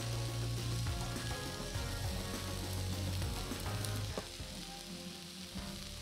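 Slices of steak sizzling on a hot stone serving slab, with soft background music underneath.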